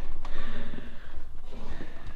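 Heavy breathing and rustling as the cabin door of an early V-tail Beechcraft Bonanza is pulled shut.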